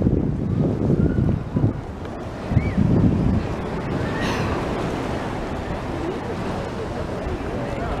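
Wind buffeting the microphone over the steady wash of the sea, with indistinct voices during the first three seconds.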